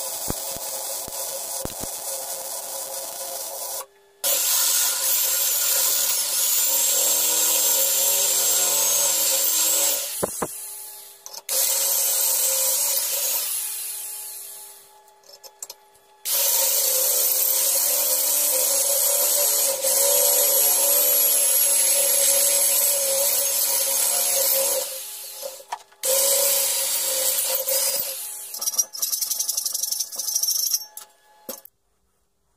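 A wire-feed welder crackles steadily for the first few seconds. After a cut, an electric drill with a step drill bit bores through steel sheet in several long runs, its motor whining under a high squeal from the bit cutting the metal, stopping and starting with short pauses between.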